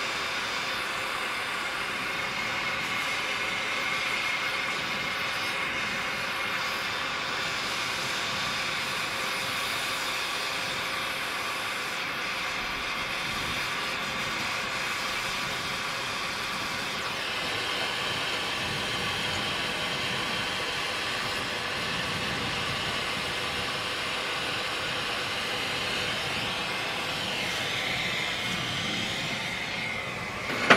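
Handheld gas torch burning with a steady hiss as its flame heats a small steel loop; the tone shifts slightly a little past the halfway point.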